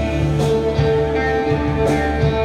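Live psychedelic drone rock band playing: electric guitars, bass, synthesizer and clarinet sustain steady held notes over the drums, with two sharp drum or cymbal hits, about half a second in and near the end.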